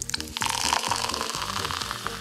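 Coca-Cola poured from a can into a glass, the liquid splashing in and fizzing as the foam rises, a steady hiss that builds about half a second in.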